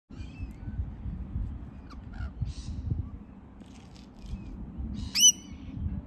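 A rainbow lorikeet gives one loud, short screech with a fast upward sweep about five seconds in, among faint scattered bird chirps over a low rumble.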